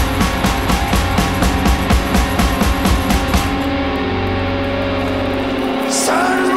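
Live rock music with electric guitar over a fast, driving beat of about five hits a second. The beat stops about three and a half seconds in and a held chord rings on.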